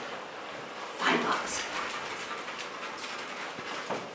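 A large dog whimpering while held in a sit-wait, eager to be released to search; the loudest whimper comes about a second in.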